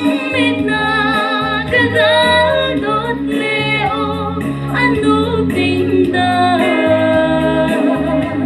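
A woman sings a Christian song into a microphone over instrumental accompaniment. Her held notes carry a wide vibrato above a steady low bass line.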